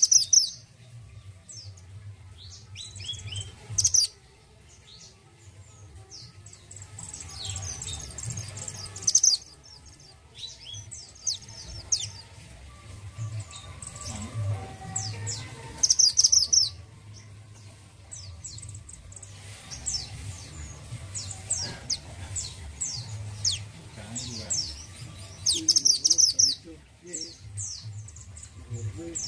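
Mantenan gunung (orange form) singing: bursts of short, high, rapid chirping phrases, the loudest about 4, 9, 16 and 26 seconds in, over a steady low hum.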